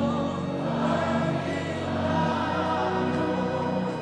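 Gospel worship music: a group of singers sings slow, held lines over a steady sustained instrumental backing.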